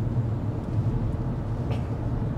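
Steady low road and tyre rumble inside the cabin of an XPeng G6 electric SUV driving on a city road, with no engine note.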